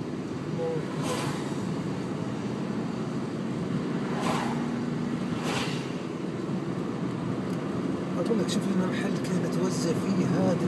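Steady engine and tyre noise heard inside a moving car's cabin, with a few short hisses about a second, four and five and a half seconds in.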